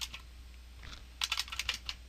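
Computer keyboard being typed on: a couple of keystrokes at the start, a short pause, then a quick run of keystrokes about a second in.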